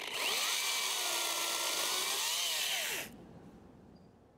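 Makita XCU06 cordless brushless top-handle chainsaw cutting through a small limb for about three seconds, its motor pitch sagging and rising as the chain loads in the wood, then stopping suddenly when the trigger is released.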